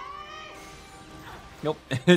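A high, drawn-out cry from the anime's soundtrack, wavering and rising and falling in pitch, over music. It fades out by about halfway through.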